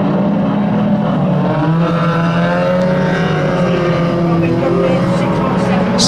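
Several banger race cars' engines running together on the track, their pitches rising and falling as the drivers rev and lift off.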